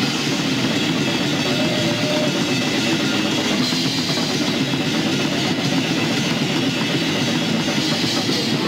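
Death metal band playing live: rapid drumming on a full drum kit under a dense wall of distorted guitar, steady and loud throughout.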